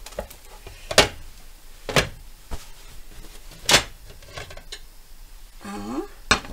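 A ceramic frying pan and a plate knocking and clattering as a pancake is turned out of the pan onto the plate and the empty pan is put back on a glass-ceramic hob. There are about four sharp knocks, a second or so apart.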